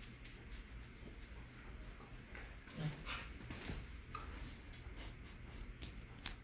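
A dog making a short low sound about three seconds in, then a brief high-pitched whine, over a faint steady low hum.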